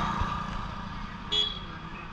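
Roadside traffic noise as vehicles pass on the highway, with a short, sharp horn toot about a second and a half in.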